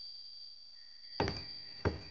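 Two heavy footsteps on wooden planks, the second about two-thirds of a second after the first, in the second half.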